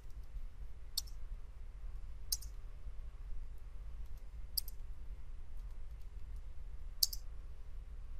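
Computer keyboard being typed on: soft scattered key taps with four sharper clicks a second or two apart, over a low steady hum.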